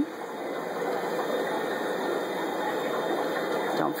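Steady hum and rushing hiss of a fish room's running air pumps and filters, with a faint constant tone.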